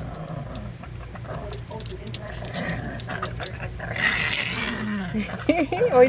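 A small dog growling in play over a plush bee toy, a steady low rasp with scattered light clicks. Near the end a person starts to laugh.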